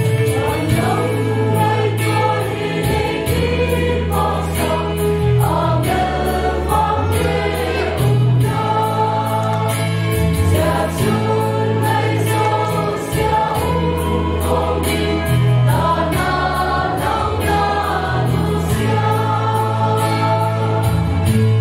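Mixed choir of men and women singing a gospel song in parts, over instrumental accompaniment with a steady sustained bass.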